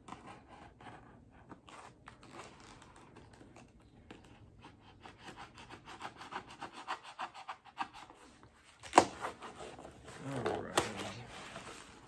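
A blade cutting through packing tape and cardboard on a shipping box: a long run of quick scratchy strokes, then a sharp snap about nine seconds in and another nearly two seconds later as the box is worked open.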